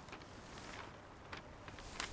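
Faint, steady background noise in a pause between spoken lines, with a single soft tick about a second and a half in.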